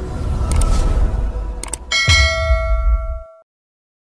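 Logo-intro sound effect: a heavy low rumble with a few short ticks, then a bright bell-like ding about two seconds in that rings on over the rumble. The whole thing cuts off suddenly about a second and a half later.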